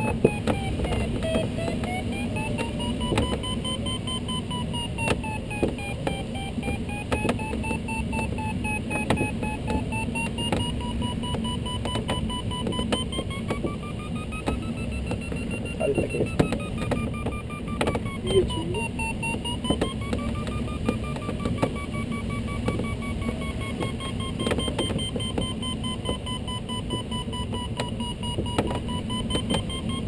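A glider's electronic variometer sounds a continuous tone whose pitch rises and falls slowly, following the sailplane's changing rate of climb. Under it runs the steady rush of air past the canopy in the Duo Discus cockpit.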